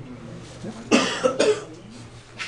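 A man coughing twice in quick succession about a second in, two short harsh bursts.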